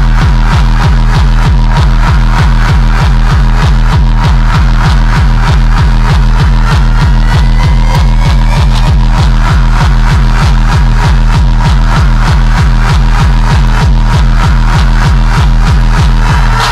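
Hard, fast electronic dance music in the darkstep / hardcore drum-and-bass style, driven by a dense, evenly repeating pounding kick and bass, with slow rising synth sweeps over it.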